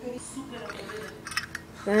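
Metal clinks and taps of a Zippo lighter being handled, its metal case and insert knocking together as the insert is worked out, with a few sharp ringing clicks about two-thirds of the way in.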